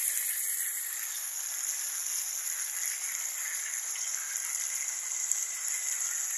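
Spiced vegetables frying in hot oil in a pan, giving a steady sizzle.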